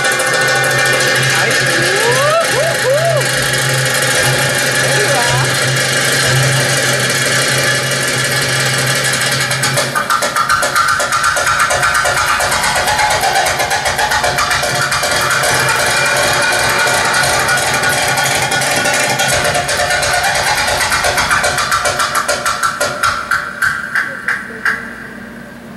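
Arabic belly-dance music playing, with the dancer's finger cymbals (zills) clicking in quick rhythm over it, the strikes sharper and more frequent in the second half.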